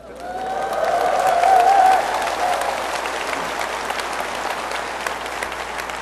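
Audience applauding, swelling over the first second or two and then holding steady, with a few voices from the crowd heard over it at first.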